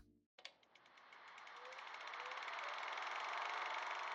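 Edited-in transition sound effect: a click about half a second in, then a hiss with a fast, fine ticking that swells up and begins to fade near the end.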